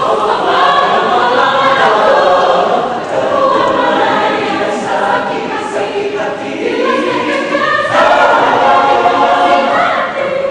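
Mixed choir of men's and women's voices singing in parts, swelling louder about eight seconds in.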